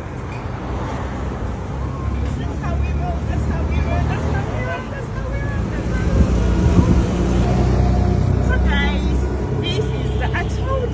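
Roadside traffic noise: a steady low rumble of passing vehicles with faint voices mixed in, growing louder about six seconds in.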